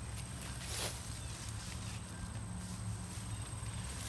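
Soft rustling of grass and a mesh pop-up enclosure being handled, with a faint scuff about a second in, over a steady low rumble and a faint steady high whine.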